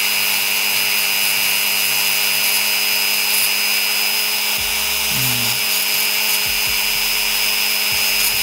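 A Dremel rotary tool running steadily with a constant motor whine as its ball burr grinds through eggshell, thinning the shell down to the membrane beneath.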